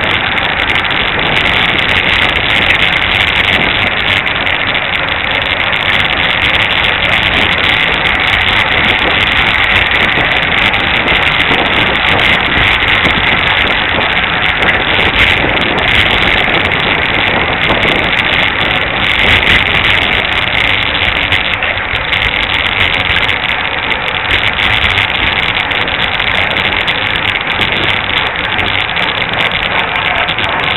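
Steady wind noise on a camera microphone mounted on a road bike moving at race speed, mixed with road noise.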